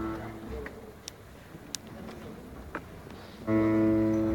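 A held guitar chord rings and fades out within the first half-second. A quiet pause with a few faint clicks follows, then another chord is struck and held near the end.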